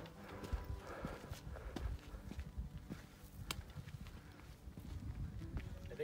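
Footsteps on bare rock ledges, with irregular sharp clicks of trekking-pole tips tapping the stone and soft scuffs and thuds between them.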